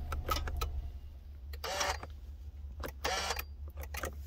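Low steady hum in a car's cabin with the engine not running, broken by a few light clicks and two brief rustling noises.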